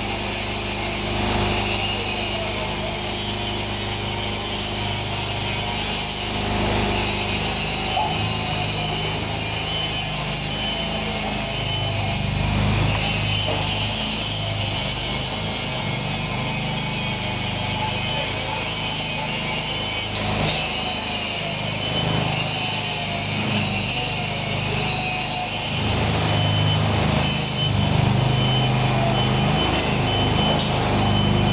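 Engine of an LP-gas-powered mold change cart running, its low hum swelling and easing as the cart drives and works its hydraulics, with a steady high whine over it.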